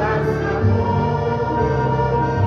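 Choir singing a Christian song over instrumental backing, with long held notes in several voices.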